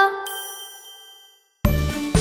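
The last chime notes of a short logo jingle ring out and fade away, with a high bell-like ding just after the start. After a moment of silence, a bouncy children's song starts with a steady, pulsing bass beat near the end.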